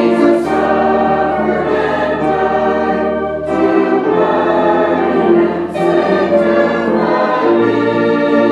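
Congregation singing a hymn with organ accompaniment: slow held chords over deep sustained bass notes, with short breaths between lines.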